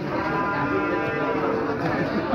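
A bull mooing once: one long, steady call of about a second and a half.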